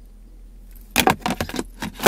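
A quick run of sharp clicks and knocks about a second in, as hands handle the plastic center console storage compartment and its lid.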